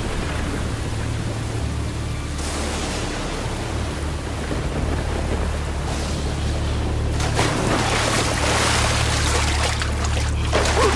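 Disaster-film sound mix: a low, steady rumbling drone under a hiss of wind and water. About seven seconds in, the noise of heavy rain and rushing floodwater swells up loud.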